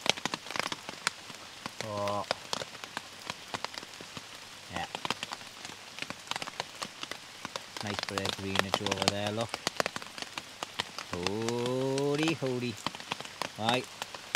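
Heavy rain falling through woodland: a steady hiss with a dense scatter of sharp drop hits close by.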